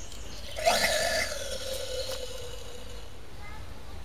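Gummy bear pushed with tongs into a hot glass test tube: a sudden hiss about half a second in, with a whistling tone that slides slightly down in pitch and fades over about two seconds. The bear gets stuck partway down the tube instead of dropping into the molten potassium chlorate.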